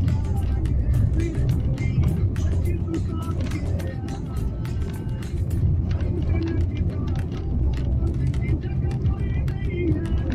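Steady low rumble of a car's tyres and suspension over a broken, potholed road, heard inside the cabin, with frequent short knocks and rattles from the rough surface. Music with a voice plays over it.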